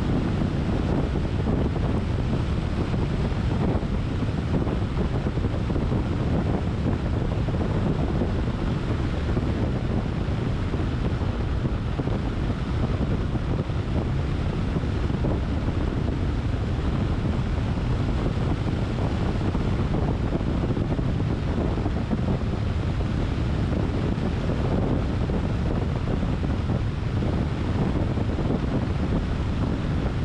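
Steady rush of wind on the microphone mixed with the road noise of a car driving at speed along an asphalt road, low and even throughout.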